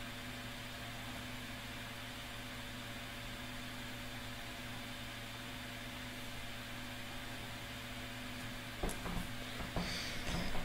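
Steady electrical hum with a constant background hiss, room tone from the recording setup. A couple of faint knocks near the end.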